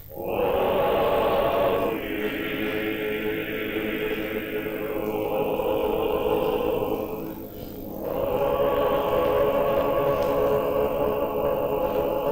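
A church choir chanting slow, held chords, in the manner of Orthodox liturgical singing at a consecration rite, heard as an old newsreel recording. The chord changes about two seconds in, and again near eight seconds after a brief dip in level.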